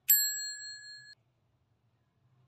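Bell-icon ding sound effect from an on-screen subscribe animation: a single bright chime that rings for about a second and then cuts off suddenly.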